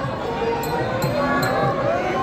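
Procession drums beating at an uneven pace of about two strokes a second, under the pitched sound of music and voices from a dense crowd.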